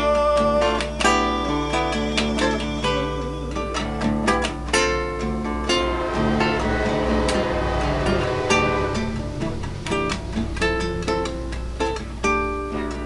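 Solo acoustic guitar played fingerstyle as an improvisation, with quick runs of plucked single notes and chords. A held sung note from the player ends about a second in.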